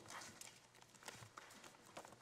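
Faint, scattered footsteps and the handling of papers and binders, a few soft knocks and rustles in an otherwise quiet room.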